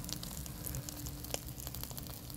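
Catfish grilling over charcoal: fat dripping from the fish sizzles and crackles faintly on the hot coals, with scattered small pops and one sharper pop about two-thirds of the way through.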